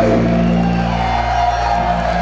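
Live hardcore punk band playing loud, electric guitars holding ringing chords, the low notes changing about a second in.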